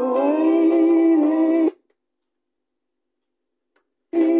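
A 1980s Han Xiang Da boombox playing a song with singing through its speakers, which cuts off abruptly about halfway through. Dead silence follows, broken by one faint click shortly before the end.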